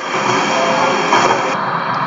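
A video clip's own soundtrack playing back from an indoor trampoline park: a steady, dense wash of hall noise with faint background music under it.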